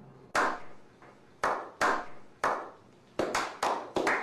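A slow clap by a small group of men: single claps about a second apart, each trailing off in echo, then coming faster near the end.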